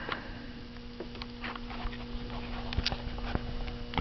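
A steady low electrical hum that starts just after the meter is switched on, with a few light clicks and handling noise over it.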